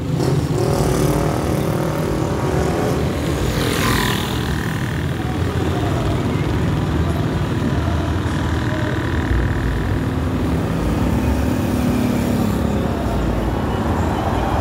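Steady engine and road noise from a vehicle driving along a town street, with a brief falling hiss about four seconds in.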